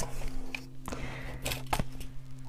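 Light handling sounds on a desk: a few short clicks and knocks as a clipboard is moved aside and a wooden ruler is laid down, over a steady low hum.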